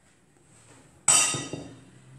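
A glass bowl clinks once, about a second in, with a short ring that fades away.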